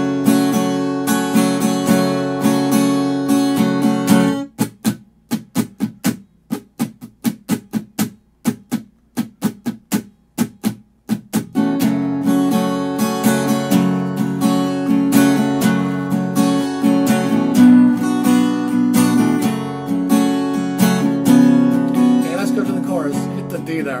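Acoustic guitar with a capo on the second fret, strummed on open chords in a down, down, up, up, down, up pattern. From about four seconds in, the strums are cut short and stop at once for about seven seconds, then full ringing strumming resumes.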